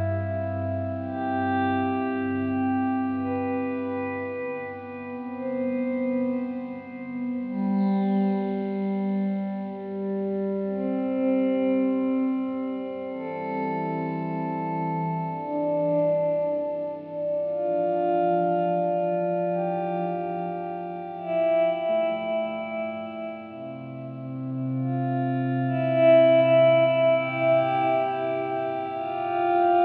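Slow instrumental relaxation music of long held notes, moving through changing chords every few seconds.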